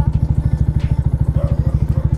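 Yamaha MT-125's single-cylinder four-stroke engine idling through an Akrapovic titanium exhaust: a steady, even, fast pulsing.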